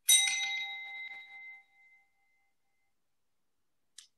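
A small bell struck once, ringing with several clear high tones that fade over about two seconds. It marks the end of a period of silent reflection.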